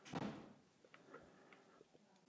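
Near silence: room tone, with a brief soft noise just after the start and a few faint ticks after it.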